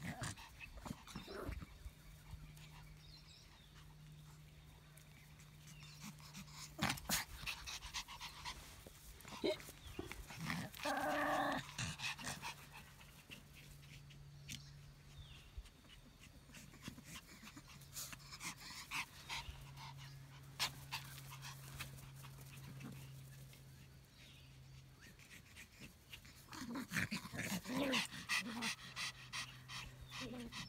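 Pomeranians panting as they play, with scattered short scuffling noises and a short pitched call about eleven seconds in. A low steady hum runs underneath, and near the end a quick run of panting breaths grows louder.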